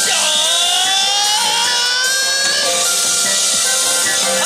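Yosakoi dance music, with a held note that dips sharply at the start and then slides slowly upward for about two and a half seconds over a steady backing.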